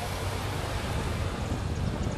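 Several Honda Gold Wing touring motorcycles riding slowly past in a circle, their flat-six engines a steady low hum under wind noise on the microphone.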